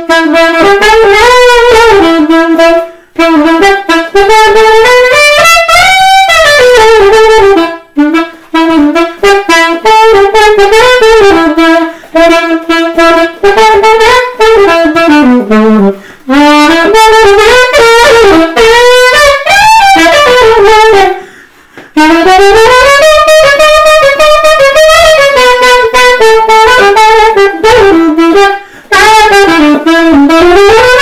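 Unaccompanied saxophone improvising a jazz line: one melody that winds up and down in phrases, with short breaks for breath about 3, 8, 16, 21 and 29 seconds in.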